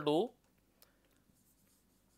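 Marker pen writing on a whiteboard: faint scratchy strokes as a formula is written out, with one small tick a little under a second in.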